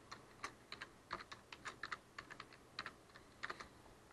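Typing on a computer keyboard: a faint, quick, irregular run of keystrokes.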